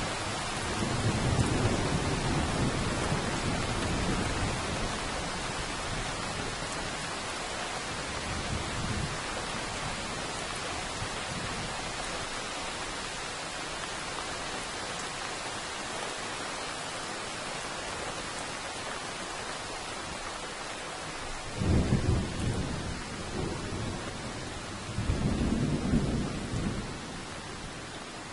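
Steady rain with thunder: a low rumble of thunder in the first few seconds, then two louder peals near the end.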